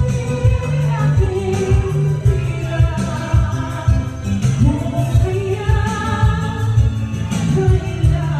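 A woman singing a Tagalog song live into a microphone, in long held notes, over amplified accompaniment with a steady bass beat.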